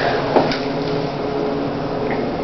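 Steady mechanical hum with a faint constant tone inside an Otis 2000 hydraulic elevator car, with one light knock about half a second in.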